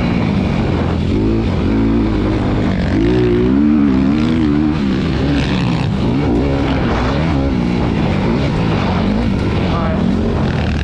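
A 250cc motocross bike engine, heard from the rider's onboard camera, revving up and down repeatedly as the throttle is worked, under a constant rush of wind and track noise.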